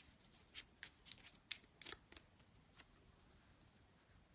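Oracle cards being shuffled and drawn by hand: faint, short flicks and taps of card stock, scattered over the first three seconds.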